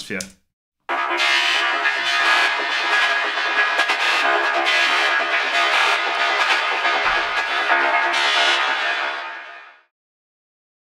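A trance atmosphere made from a looped psytrance sample, run through effects and shifted in key, playing solo with everything below about 200 Hz cut away by EQ. It starts about a second in and fades out near the end.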